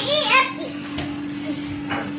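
A child's high voice calls out briefly at the start, then fades to room sound with a steady low hum and a couple of faint knocks.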